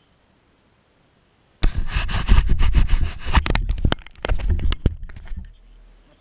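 Close handling noise: rustling, scraping and knocking right at the microphone. It starts abruptly about a second and a half in, after silence, and dies away near the end.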